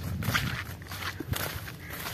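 Footsteps of a person walking across a field, a run of irregular soft steps.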